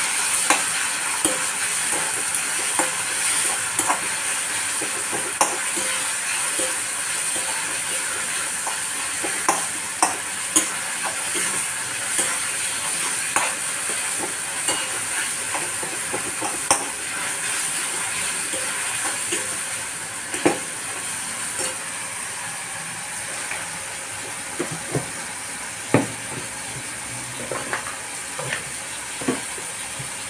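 Chopped tomatoes, onion and green chillies sizzling in oil in a non-stick kadhai as a steel spatula stirs them, with sharp clicks and scrapes of the spatula against the pan every few seconds. The sizzle eases slightly toward the end.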